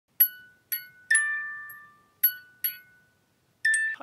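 Short intro jingle of about six struck, bell-like mallet notes, glockenspiel-like, each ringing and fading; the last note is cut short.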